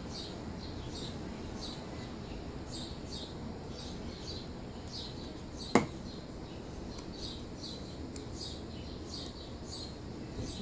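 A small bird chirping over and over outdoors, short high chirps about twice a second. A little past halfway, a single sharp knock on the wooden tabletop stands out as the loudest sound.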